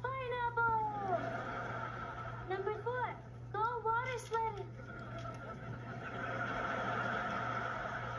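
A high-pitched voice from a TV clip played through computer speakers, in short rising-and-falling calls during the first half. It is followed by a steady murmur of noise for the last few seconds.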